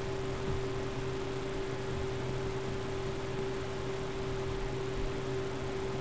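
Steady background hum and hiss with one constant mid-pitched tone and no distinct events: the recording's room or electrical noise.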